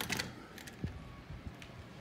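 An interior door's latch clicking as the knob is turned and the door is opened, with a short rattle, then a few soft knocks.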